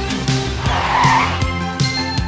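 Bike tyres skidding on pavement for under a second midway, as a BMX bike lands, over background music with a beat.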